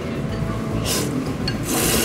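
A person slurping ramen noodles: short, airy sucking bursts, the longest and loudest near the end.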